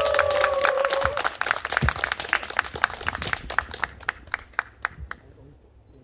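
Audience applauding: many hands clapping densely at first, thinning to scattered claps after about three seconds and dying away near the end. A steady held tone sounds over the first second.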